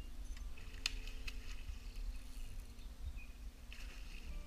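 Riverbank sound with a steady low rumble and a few sharp clicks about a second in, then a splash near the end as the fishing rig lands in the river.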